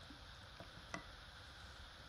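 Near silence with a soft click about a second in, and a fainter one just before it: a cheese knife cutting through a block of semi-hard morbier against a wooden board.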